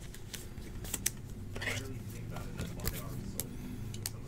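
Soft plastic rustling and light scattered clicks of a trading card being handled and slid into a clear plastic sleeve and holder.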